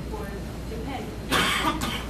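A person coughing: one loud cough a little past the middle, then a shorter second one straight after, over faint speech.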